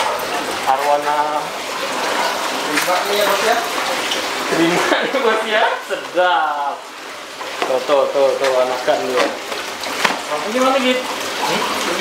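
Men talking over a steady rush of running water from aquarium tanks.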